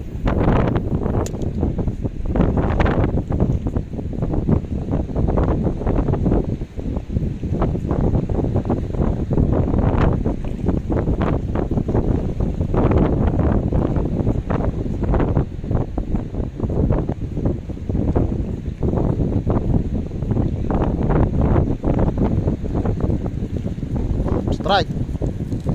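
Wind buffeting the microphone in a constant, gusting rumble, over the wash of the sea.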